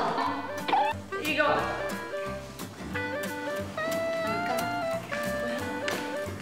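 Background music: a melody of held, stepping notes over a steady bass line with light drum hits. Brief voices cry out in the first second or so.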